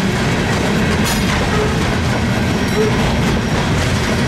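Freight train of coal hopper cars rolling past: a steady rumble of steel wheels on rail with clicks over the rail joints and a couple of faint, brief wheel squeals.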